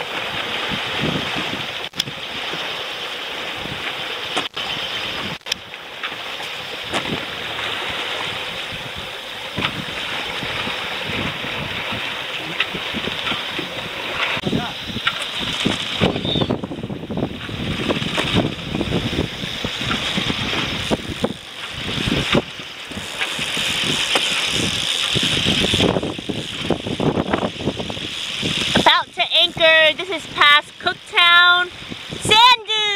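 Wind buffeting the microphone and water rushing past the hull of a sailing yacht under way, an uneven, gusting hiss. A voice starts right at the end.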